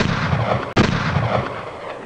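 Two sudden, loud blasts, the second about three-quarters of a second after the first, each followed by a long dying echo.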